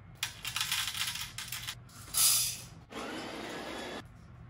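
Crinkling of a foil coffee-bean bag being handled, with a louder short rustle a little after two seconds. After that comes a steadier rustle of paper being handled.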